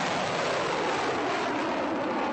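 Ballistic missile's rocket motor firing at launch: a loud, steady rush of noise.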